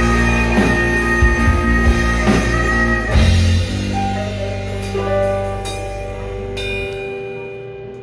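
Live rock band with guitars, keytar, bass and drums playing a power-ballad passage of held notes without singing. The sound thins and fades, and the bass and drums drop out about seven seconds in, leaving a few sustained notes.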